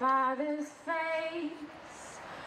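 A woman singing solo without accompaniment: two short phrases of held notes, the second ending about two-thirds of the way in, then a pause.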